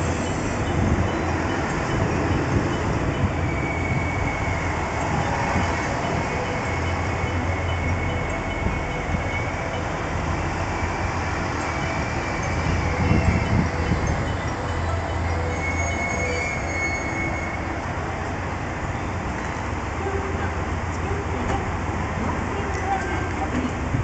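Chizu Express HOT7000-series diesel multiple unit rolling slowly along the platform and coming to a stop, with a steady low rumble from its diesel engines and running gear. A few brief, faint high squeals come from the wheels.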